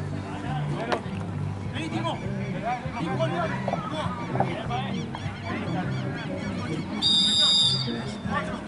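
A single referee's whistle blast near the end, shrill and steady, lasting under a second, signalling the restart of play. Before it come many short chirping calls and murmuring voices.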